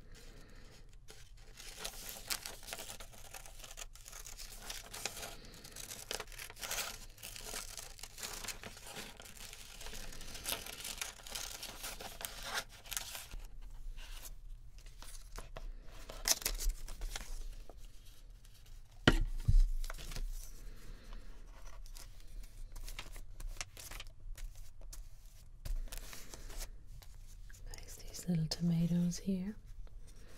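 Scissors cutting through magazine paper close to a binaural microphone: quick, crisp snips with paper crinkling for the first dozen seconds. Then quieter rustling as the cut-out paper is handled and pressed onto the journal page, with one sharp knock about two-thirds of the way in.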